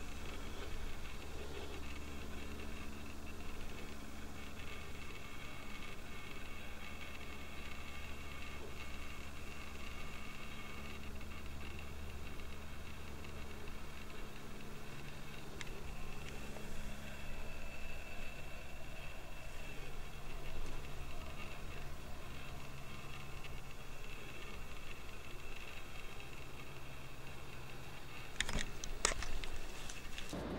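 Steady outdoor night ambience: a low hum with faint, steady high-pitched tones above it, and a few short scuffs near the end.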